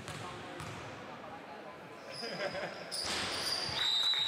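A basketball being bounced on a gym floor, a few sharp bounces in the first second, with voices in the hall. Toward the end, high-pitched squeals of sneakers on the court come in as the players start running.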